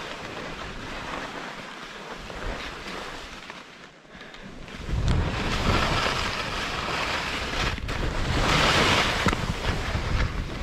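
Skis scraping and chattering over crunchy, chopped-up snow, a steady rough hiss. About halfway through, a low wind rumble on the microphone comes in and the whole sound gets louder.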